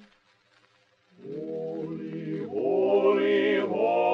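A barbershop quartet of four male voices singing a cappella in close harmony. A held chord fades out right at the start, and after about a second of near silence the voices come back in together, swelling louder on sustained chords.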